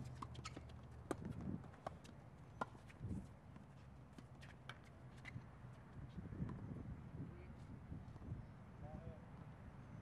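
Faint tennis rally on a hard court: scattered sharp pops of racket strikes and ball bounces, most of them in the first second or two, over a low steady background rumble.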